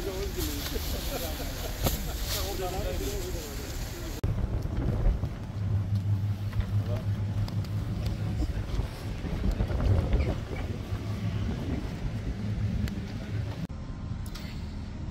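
Several people talking in the background. About four seconds in this gives way to a steady low rumble of an engine running, with noise over it that rises and falls.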